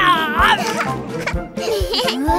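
Young cartoon voices laughing and giggling over bright background music with a steady beat.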